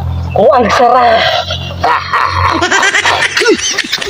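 Mostly speech: a voice speaking in short, bending phrases over a steady low hum that stops about two and a half seconds in.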